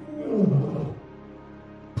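A lion's roar sound effect: one short call falling in pitch, starting about a quarter of a second in and fading out before the one-second mark, over soft background music.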